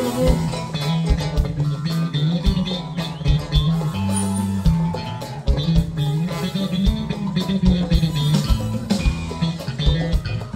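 Live funk band playing loudly, with a prominent electric bass line and a drum kit driving a steady beat.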